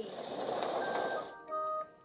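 Sound effects from an educational typing game's speaker: a rushing noise for about a second, then a short run of steady electronic tones, like a chime.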